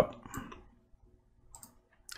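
A couple of faint, short clicks of a computer mouse, one early and one about one and a half seconds in, against near silence.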